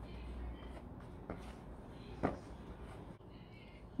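Faint rustle of a silicone spatula stirring flour and other dry baking ingredients in a plastic bowl, with two short knocks about a second and two seconds in, the second louder.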